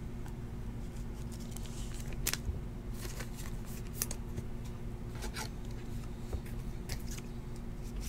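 Trading cards being handled by hand: faint scattered clicks and light rustles of card stock, over a steady low hum.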